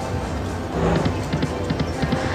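88 Fortunes slot machine playing its game music and reel sounds as the reels spin and come to rest, with a quick run of clicks as the reels land.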